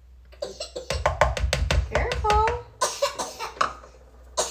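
A quick run of light clicking taps, about six a second, as an egg is tipped from a cup into a mixing bowl of muffin batter. A toddler gives a short vocal cry about halfway through.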